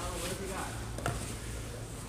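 Sports-hall ambience: faint background voices and a single sharp knock about a second in.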